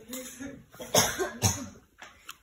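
A person coughing twice, two sharp coughs about half a second apart.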